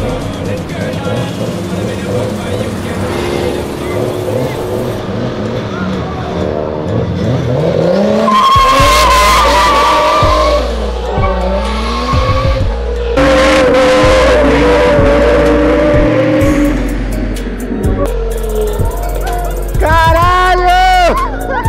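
Modified Nissan Silvia S15 with its engine revving hard and its tyres squealing as it drifts away down the street. There are two long loud squeals, the first about eight seconds in and the second about thirteen seconds in.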